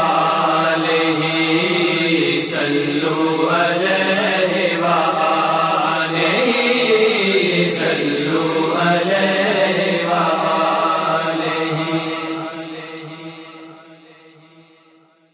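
Layered backing voices of a naat, chanting and holding long sustained notes, fading out over the last two seconds.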